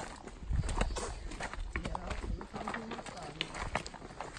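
Footsteps on a loose, stony trail with wooden walking sticks knocking against the rocks: irregular sharp clicks and clacks.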